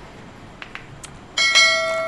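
A bell chime sound effect from an animated subscribe-button overlay is struck once about one and a half seconds in. It rings with several steady overtones and fades slowly, after a few faint clicks.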